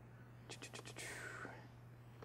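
A quick run of about four faint clicks about half a second in, then a soft breathy hiss, over a steady low electrical hum.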